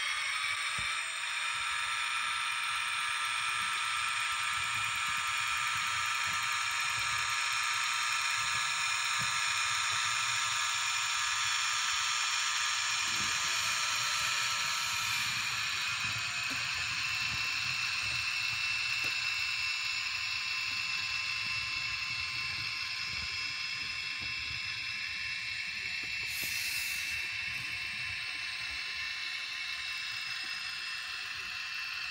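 HO-scale model diesel locomotive's electric motor and gears whining steadily as it pulls a passenger train along the layout, several high tones over a hiss. The whine rises a little in pitch about halfway through as the train picks up speed, and there is a brief high hiss near the end.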